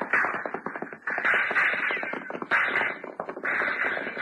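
Radio-drama sound effect of horses galloping: a fast, dense clatter of hoofbeats throughout, with several louder surges of noise over it.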